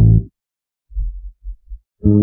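Bass line of a bass-boosted G-funk hip-hop instrumental, sparse at this point: one note dies away at the start, a short break follows, then four short, low bass notes come in quick succession.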